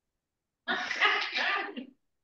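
A woman's short burst of laughter mixed with the words "for head", heard over a video call. It starts just under a second in, lasts about a second, and cuts off to dead silence.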